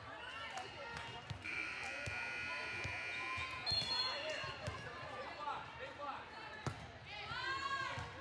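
Volleyball game sounds in a large, echoing sports hall: players and spectators talking and calling out, and a ball bouncing on the court floor. There is a short whistle blast a little before the middle and a single loud ball strike near the end.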